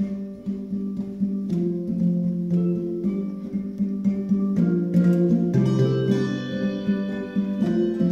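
A handbell choir playing: many bronze handbells ringing together in chords with rhythmic struck notes, some bells hit with mallets. The music starts abruptly out of silence, and a deep bass bell joins about five and a half seconds in.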